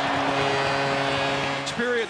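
Arena goal horn sounding one steady note over a cheering crowd, signalling a home-team goal. It cuts off abruptly near the end.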